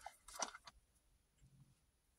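Near silence, with a few faint clicks about half a second in from hands handling the mini shotshells and their cardboard box.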